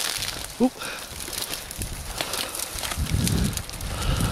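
Footsteps pushing through dense dry bracken and bramble: scattered crackling and rustling of dry stems. A brief voice sound about half a second in is the loudest moment.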